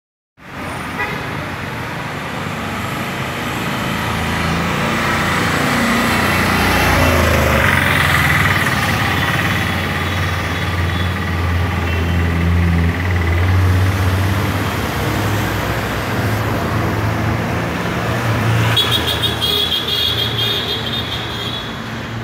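City street traffic: vehicle engines running and passing, with occasional horn toots.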